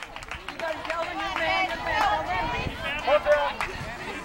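Several voices talking and calling out over one another, a mix of background chatter and shouts, with a few sharp clicks among them.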